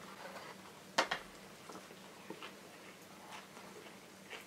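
A man biting into and chewing a burger of breaded red pesto vegetable goujons in a sesame bun: one sharp crisp snap about a second in, then quiet chewing with faint soft clicks.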